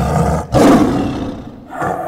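Tiger roaring twice: the first roar ends about half a second in, and the second follows at once and fades away over about a second.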